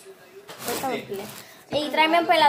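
Speech: voices talking, louder near the end, with no other sound clearly standing out.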